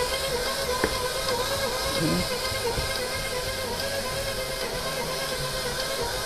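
Electric stand mixer running steadily, its flat beater working a soft butter and cream-cheese dough in a metal bowl as flour is mixed in, with background music playing over it.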